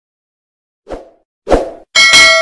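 Pop sound effects of an animated subscribe end card: two short pops about half a second apart, the second louder. A bell-like ding starts just at the end.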